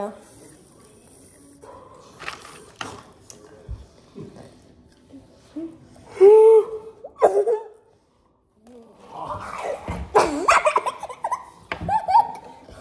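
Wordless voices with laughter in a small room: a short, loud vocal cry about six seconds in, a moment of dead silence around eight seconds, then a burst of laughing near the end.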